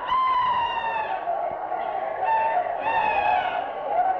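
Several drawn-out, high-pitched meowing calls, each about a second long and falling slightly in pitch, overlapping one another: people in a crowd imitating cats.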